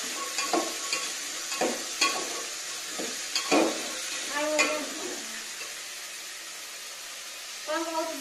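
Steady hiss with scattered light knocks and taps, about five of them in the first five seconds, and a young child's short vocal sound a little past the middle.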